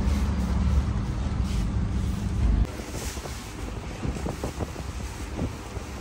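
Steady low rumble of the fire burning inside a clay tandoor oven, cutting off suddenly a little under three seconds in. After it come quieter, scattered light knocks of dough being worked on a floured counter.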